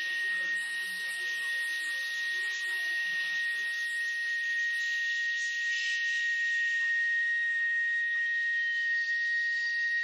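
A wind ensemble holding one high, steady note throughout, with a faint hiss above it. Quieter low instruments underneath fade out about halfway.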